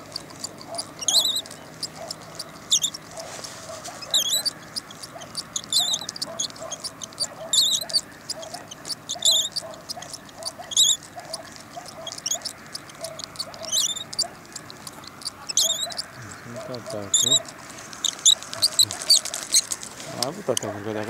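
A small animal, most likely a bird, gives a short high chirp about every second and a half, very regularly. The chirps sound over a steady background hiss.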